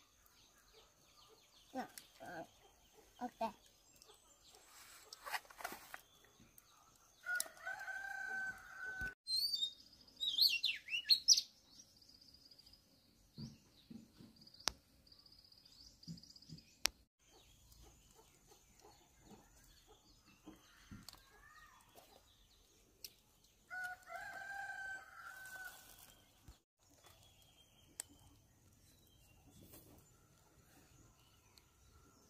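A rooster crows twice, once about a quarter of the way in and once near the end, each crow lasting about two seconds. In between, a small bird gives loud high chirps, then a thinner trill.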